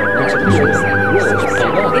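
Emergency vehicle sirens: a fast yelp rising and falling about four times a second over a slower wail, with music underneath.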